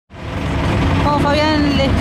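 Steady low rumble of a vehicle engine running close by in the street. A man's voice begins speaking about a second in.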